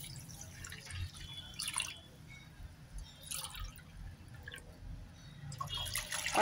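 Water poured in a stream onto a heap of granulated sugar in a nonstick pan, a faint trickling and splashing as the sugar is wetted for a syrup.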